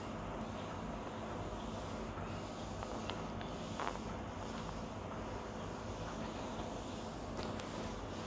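Thick mushroom gravy bubbling in a kadai on high flame, a steady low simmering with a couple of soft pops about three to four seconds in.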